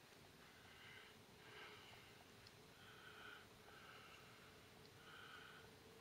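Near silence: faint outdoor hush with about five faint, short, pitched calls spread through it.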